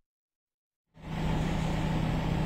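Silence for about the first second, then a steady low mechanical hum over even outdoor background noise fades in and holds at a constant level.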